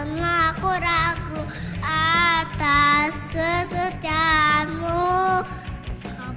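A four-year-old boy singing an Indonesian worship song into a handheld microphone over backing music, with several long held notes.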